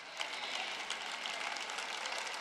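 Audience applauding: many hands clapping in a steady, dense wash.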